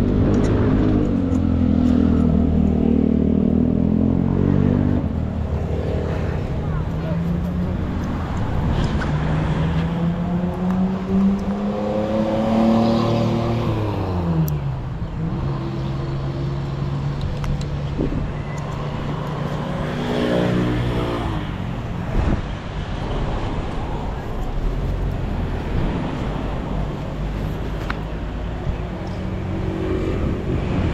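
Small motorbike and scooter engines running and revving, their pitch rising and falling one after another, with a long rise that drops away sharply around the middle.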